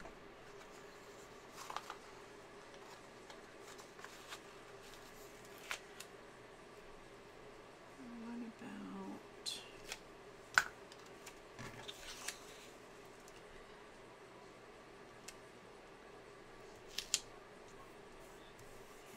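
Faint, scattered clicks and light paper rustles from hands handling stickers, tools and the planner's pages, over a low steady hum.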